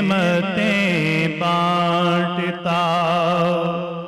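A man singing a devotional naat into a microphone, drawing out long, wavering held notes. The final note starts to die away at the very end.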